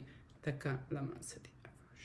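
A woman speaking softly, almost under her breath, in a few short stretches that fade toward the end, much quieter than her normal reading voice.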